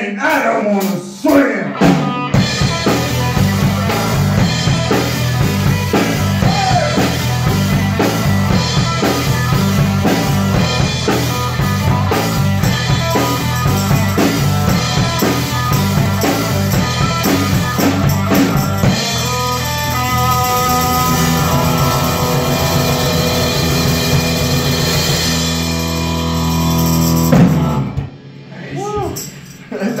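Amateur rock band playing live in a small room: drum kit, electric bass and electric guitar, with a tambourine shaken along. The playing starts about two seconds in, moves to held chords past the middle, and ends on a loud final hit near the end, followed by laughter.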